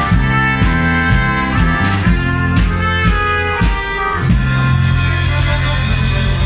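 A small street band of trumpet, accordion and acoustic guitar playing a tune over a steady strummed beat. About four seconds in, the beat stops and the band holds one long chord.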